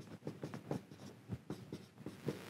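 Marker pen writing on a whiteboard: a quick, irregular run of short, faint strokes as a word is lettered.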